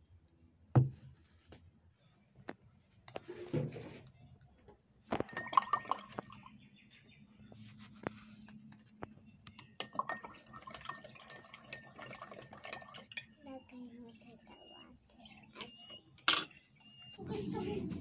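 Metal spoon tapping and clinking against a drinking glass as salt is spooned into water and stirred in: scattered taps at first, then a few seconds of steady clinking with a light ringing of the glass while stirring.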